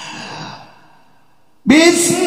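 A Qur'an reciter's heavy breath into the microphone, a short pause, then near the end his voice opens a new long, steadily held note of melodic recitation.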